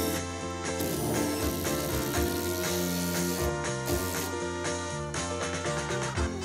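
Background music with a power drill driving a screw into a timber batten. The drill runs for about two and a half seconds, starting about a second in.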